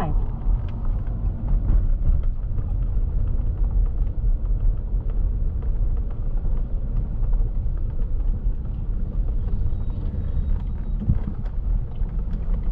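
Car driving along a rough, narrow country road, heard from inside the cabin: a steady low rumble of tyres and engine with scattered faint clicks.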